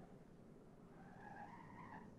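Faint tyre squeal, a wavering whine that rises and falls through the second half, as a distant vehicle turns. Its engine rumble fades away.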